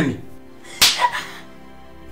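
A single sharp slap to the face, about a second in, followed by a brief vocal sound.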